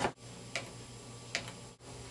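Two short, sharp clicks a little under a second apart over a faint steady hum.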